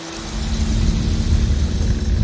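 A car driving on a road: a steady low rumble of engine and road noise with a faint even drone, starting a moment in.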